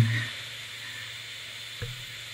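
Steady background hiss of room tone, with one soft click near the end.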